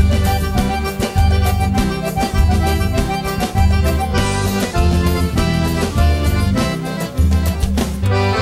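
Instrumental break of a sertanejo song: a button accordion plays the melody over strummed acoustic guitar, with a steady bass-and-drum beat.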